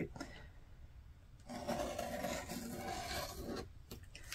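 A rotary cutter blade rolling through layered cotton fabric against a cutting mat. It makes a steady scraping rasp that starts about a second and a half in and lasts about two seconds.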